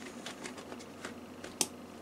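Hands handling and closing a canvas carry bag with metal press studs: faint scattered clicks and rustling, with one sharp click about a second and a half in.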